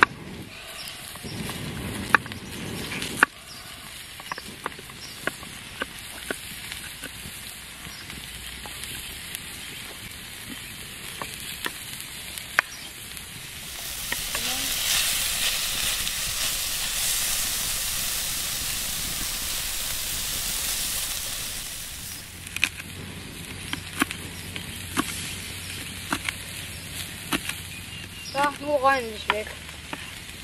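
A knife tapping on a wooden cutting board as garlic is cut, then food sizzling on a round steel pan over a wood fire as it is stirred with a wooden spatula, louder, for about eight seconds in the middle. Near the end, more knife taps on the board as spring onions are chopped.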